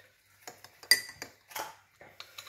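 A spoon clinking against a mug while tea is being made: a few light clicks, the loudest about a second in with a short bright ring.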